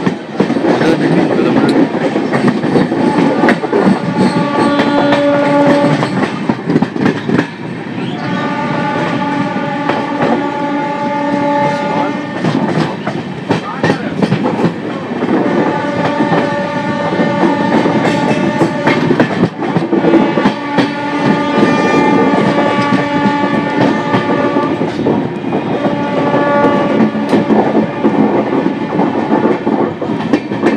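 An Indian Railways electric passenger train running along the track, with its locomotive horn sounding a series of long multi-tone blasts a few seconds apart over the steady clatter of wheels on the rails, heard from an open coach door as the train approaches a station.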